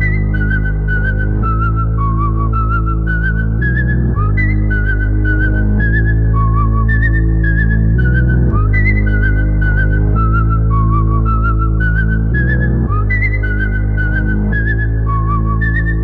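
Music with no vocals: a whistled melody with small trills and wavering pitch, played over sustained deep bass chords.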